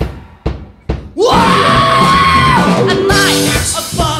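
Live rock band with a female singer: the music stops abruptly for about a second, with two sharp hits in the gap. The singer then comes in with one long held note, rising into it, as the drums and guitars come back in full.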